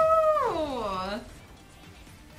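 A high-pitched voice in a long drawn-out cry that holds and then glides down in pitch, stopping a little over a second in.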